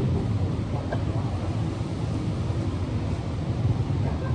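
Steady low rumbling background noise, with a faint click about a second in.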